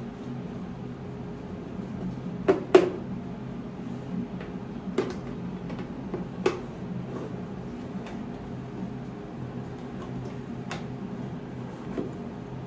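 Short hard plastic clicks and knocks as a 3D-printed plastic window piece is pushed and worked into the 3D-printed plastic birdhouse body: a handful of sharp taps, the loudest about three seconds in, over a steady low hum.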